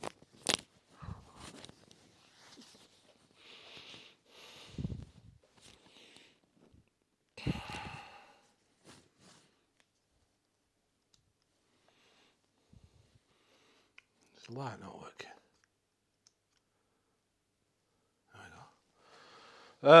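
Scattered clicks, knocks and rustles of a handheld camera being picked up and carried, separated by quiet stretches. A short low vocal sound, a murmur or sigh from a man, comes about fifteen seconds in.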